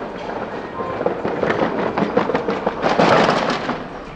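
Hand cart's small wheels rattling over stone paving tiles: a dense run of clattering knocks that grows loudest about three seconds in, then eases.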